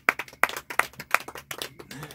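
A few people clapping by hand, quick uneven claps several a second.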